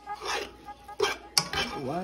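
A plastic fork stirring cooked pasta in a pot, clicking sharply against the pot twice about a second in.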